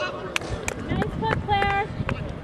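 Players' voices calling out across an open field, with a short held call near the end and a few sharp clicks in between.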